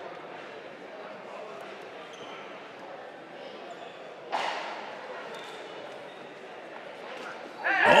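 Steady low murmur of a large indoor arena hall, with one sudden sharp knock about four seconds in that rings briefly. Near the end a man's excited shout breaks in.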